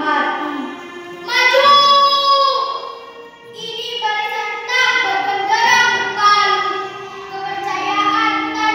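A girl's voice reciting a poem in Indonesian in a drawn-out, half-sung declamation, with long held and gliding vowels in phrases broken by short pauses.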